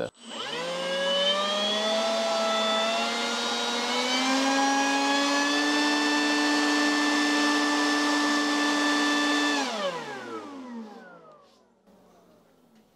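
Makita leaf blower running: its motor whine rises in pitch as it spins up, climbs again about four seconds in, and holds steady. About ten seconds in it is let off and winds down, falling in pitch until it fades.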